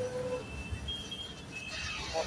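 Gas welding torch flame burning steadily on a motorcycle exhaust silencer, a low rumbling hiss. A few faint, thin whistling tones come and go over it.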